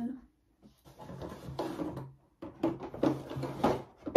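Makeup brushes and cosmetics being handled and put down while someone searches for the right brush: rustling and several short knocks.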